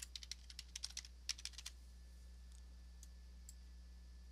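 Computer keyboard typing: about a dozen quick keystroke clicks in the first second and a half, then only a faint, steady low hum.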